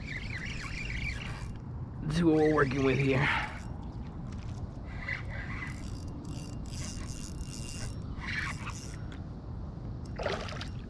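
Spinning reel being cranked to reel in a hooked fish, a ratcheting, gear-driven whirr in irregular stretches. A short voiced sound comes a couple of seconds in.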